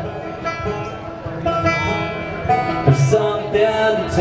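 Live alt-country band music: banjo and guitar playing steadily with no break.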